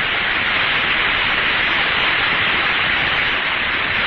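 Steady radio static hissing on a Mercury capsule's air-to-ground voice link, with no voice coming through after the call "Are you receiving? Over."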